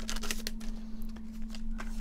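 Trading cards being slid out of a freshly torn foil booster pack: light crinkling of the foil wrapper and soft rustling and ticking of the cards, busiest in the first second.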